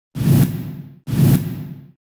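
Two identical whoosh sound effects from a TV news channel's logo intro, about a second apart, each rising sharply with a deep rumble and then fading away.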